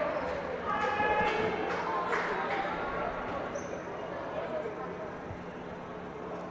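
Indoor gymnasium ambience between free throws: indistinct voices from players and the small crowd, loudest in the first couple of seconds, with a few knocks of a basketball bouncing on the hardwood floor in the reverberant hall.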